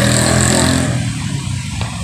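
A motor vehicle's engine running close by in street traffic, a low drone that is loudest in the first second and then eases off.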